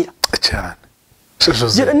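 A woman speaking, her talk broken by a pause of about half a second in the middle.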